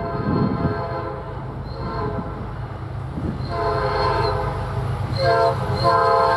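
Nathan P5A five-chime air horn on an approaching Norfolk Southern SD70ACe locomotive played in a horn show. A faint short note comes about two seconds in, then a long blast, a short blast and another blast starting near the end. Under it runs the steady rumble of the oncoming train.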